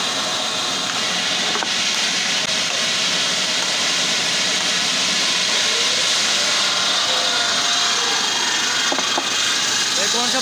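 Large water-cooled circular saw blade of a stone block cutter grinding steadily through a granite block, a constant high-pitched grinding noise with water spray.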